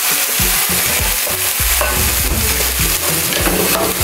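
Hot cooking oil sizzling steadily in a frying pan after the chicken has been fried, with low music notes underneath.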